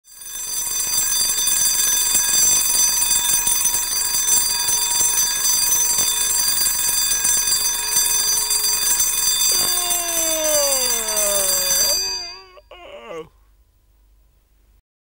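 Twin-bell alarm clock ringing loud and continuously, then cutting off suddenly about twelve seconds in. Over the last couple of seconds of the ringing, a long tone slides downward in pitch.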